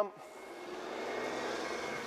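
Engine noise growing steadily louder, like something motorised approaching or passing overhead.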